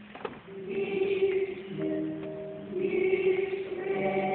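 A choir singing held chords, coming back in after a brief break right at the start.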